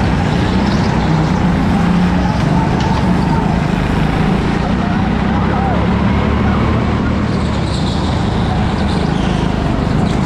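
Go-kart engine running loud and steady at speed, heard from on board the kart.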